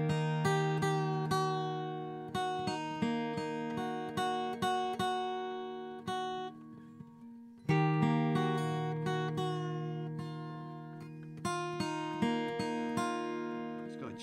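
Solo acoustic guitar fingerpicked, single notes ringing over a sustained low bass note that fades away and is struck again about halfway through.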